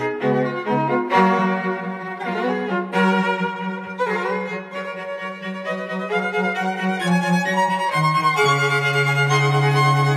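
Background music: a bowed violin melody over long-held low string notes, the bass note changing about a second in and again near the end.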